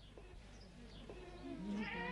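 Goats bleating, faint at first and growing louder toward the end.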